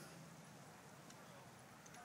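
Near silence: faint steady outdoor background hiss.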